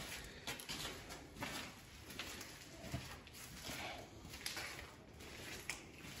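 Faint, irregular footsteps and scuffs on a grit- and debris-covered floor.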